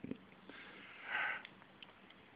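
A person's single short sniff through the nose about a second in, followed by a couple of faint clicks from handling a plastic figure.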